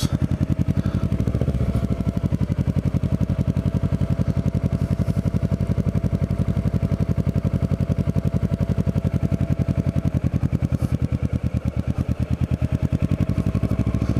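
Kawasaki Ninja 650R's parallel-twin engine running steadily at low road speed, its exhaust pulses coming through as an even, rapid beat. A thin steady whine rides over it, dipping briefly about ten seconds in and then returning.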